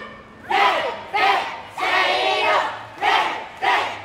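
Japanese high-school ōendan cheering squad shouting yells: five short, loud shouted calls in quick succession, the third held longer than the others.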